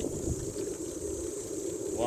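Wind buffeting the microphone and tyre rumble from a bicycle being ridden along a paved road, with a steady high-pitched insect drone in the background.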